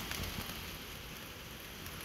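Steady background hiss, with no distinct events.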